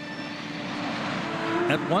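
Early Boeing 737 jet airliner's engines passing on the runway, a rushing jet noise that grows steadily louder, heard on an old film soundtrack.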